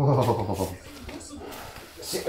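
A short, low, drawn-out vocal moan at the very start, lasting under a second, followed by quieter household movement.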